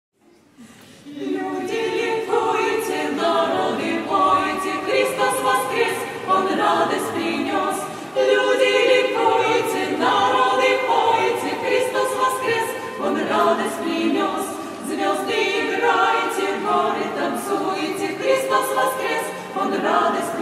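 Women's choir singing a Paschal folk song a cappella, several voices together, starting about a second in.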